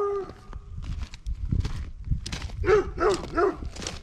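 A dog barking: one bark right at the start, then three quick barks close together about two-thirds of the way in. Footsteps crunch on gravel between them.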